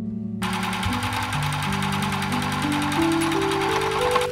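Electric sewing machine, a Bernette B37, stitching a seam at a steady fast pace with an even rapid chatter. It starts about half a second in and runs until just after the end, over background music.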